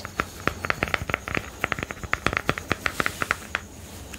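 Quick, irregular crackly clicks of fingernails tapping and scratching on a small plastic cosmetic container, several a second and densest through the middle.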